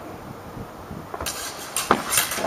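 Steel sparring rapiers knocking and scraping together, with shoes scuffing on concrete. The first second is quieter, and a sharp clack just before the end is the loudest sound.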